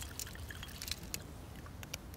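Soda water poured from a glass bottle into a glass of ice and cocktail, faint, with many small scattered ticks and crackles.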